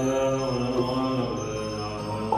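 Low voice chanting a Buddhist mantra, holding one long note that ends about a second and a half in, with music beneath it.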